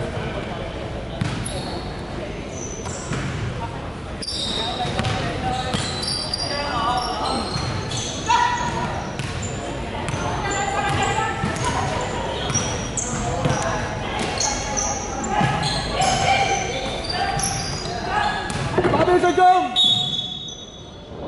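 Basketball game on a hardwood court in a large echoing sports hall: the ball bouncing, sneakers squeaking in short high chirps, and players calling out to each other.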